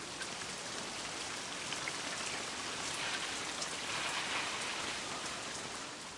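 Rain falling steadily: a dense, even hiss that swells slightly in the middle.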